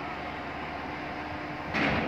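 Steady hum of port and ship machinery with a faint steady tone, broken near the end by a short, louder rush of noise.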